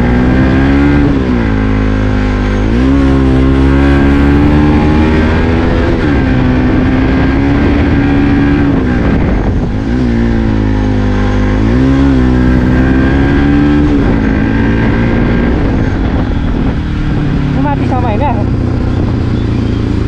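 Bajaj Pulsar NS200's single-cylinder engine pulling hard uphill under load. The revs climb and fall back several times, the pitch rising through each pull and dropping sharply between them.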